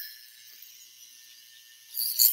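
Antique violet ray high-frequency device (a small Tesla coil) running, its glass electrode discharging against the skin of the neck: a faint, steady high-pitched buzzing hiss.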